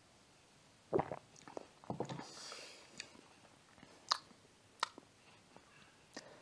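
Quiet drinking and tasting sounds: swallowing soda and mouth noises, with a handful of sharp knocks and clicks, one as the glass is set down on the wooden table.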